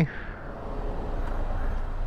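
Ducati Panigale V4 SP's V4 engine idling at a standstill, a steady low rumble, with the noise of a passing car swelling slowly.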